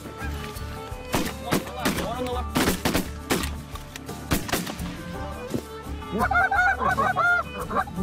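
A volley of shotgun shots, several sharp reports close together between about one and four and a half seconds in, with Canada geese honking. The honking grows thick again near the end.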